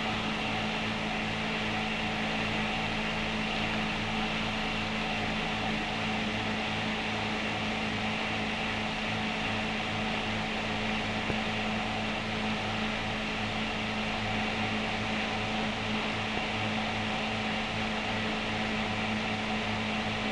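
Steady low hum with several fixed tones over an even hiss, unchanging throughout: the background noise of an old film soundtrack.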